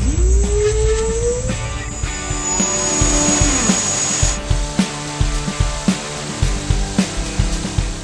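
Background music with a steady beat, laid over a whine that climbs in pitch through the first two seconds, from the E-Spyder's electric propeller motor speeding up.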